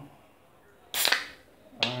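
Small aluminium Coca-Cola can's pull tab cracked open: one sharp pop about a second in, followed by a short hiss of escaping gas from the fizzy drink.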